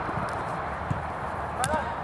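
Players in a small-sided football game on artificial turf: running footfalls over a steady low rumble, a single sharp knock about a second in, and a short shout near the end.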